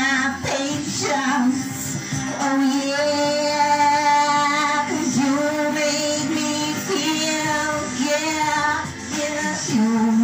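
A woman singing into a handheld microphone, holding long notes with a wavering vibrato and pausing briefly for breath about halfway through and again near the end.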